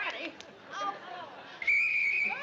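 One short blast on a whistle near the end: a steady high tone lasting under a second, over murmuring voices.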